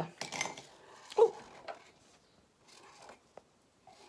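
A short exclaimed 'ooh' from a woman, then a few faint light clicks from a felt-tip marker pen being handled.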